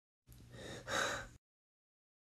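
A person's breathy, unvoiced gasp lasting about a second, softer at first and louder toward its end.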